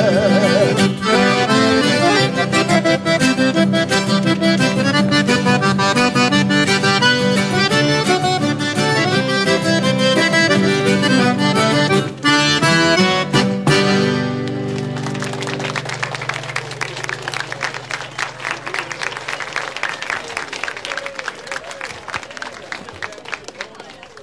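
Accordion playing a quick run of notes over a steady bass. About fifteen seconds in the tune ends on a held chord, and clapping follows and fades away.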